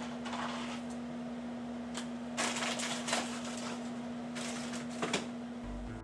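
Paper packaging rustling as dry stuffing mix is shaken out of its pouch into a steel saucepan, in a few short bursts with a click near the end, over a steady low hum.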